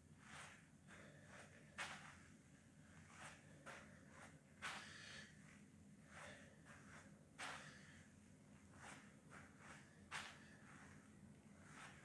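Near silence with faint, short sounds every one to three seconds from a person doing lunges: soft exhales and footfalls on artificial turf.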